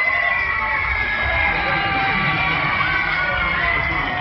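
Loud funfair ride music mixed with crowd noise and high, drawn-out shrieks and shouts from riders and onlookers.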